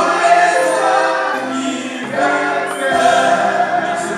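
Music with several voices singing together in chorus, holding long notes.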